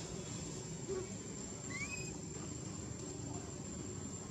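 Steady outdoor background noise under a thin, steady high whine, with one short rising chirp from an animal about two seconds in.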